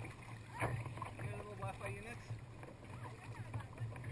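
Kayak paddle strokes and water splashing and lapping against a sea kayak's hull on choppy water, under a steady low rumble, with faint voices.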